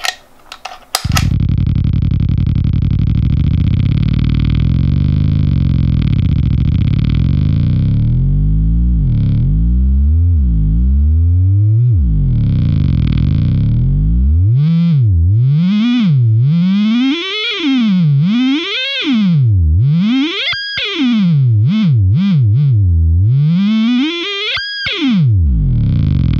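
Fuzzrocious M.O.T.H. overdrive/fuzz pedal self-oscillating with the bass's volume turned all the way down. It starts as a steady distorted buzzing drone, then about a third of the way in its pitch begins sliding down and up as the hex knob is turned. In the second half this becomes quick, repeated swoops up and down with brief drop-outs.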